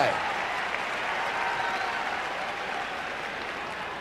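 Arena crowd applauding steadily, easing off slightly toward the end.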